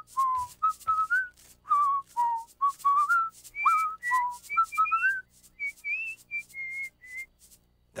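A child whistling a simple tune in clear, pure notes. The tune moves up to a higher run of notes about halfway through and stops about a second before the end.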